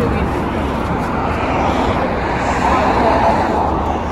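Steady road traffic noise with a heavy low rumble, under faint voices.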